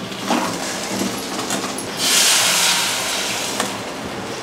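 Okra and shallots frying in oil with chilli powder in a steel kadai, stirred with a spoon. About two seconds in, water goes into the hot pan and it hisses loudly, then the hiss dies down.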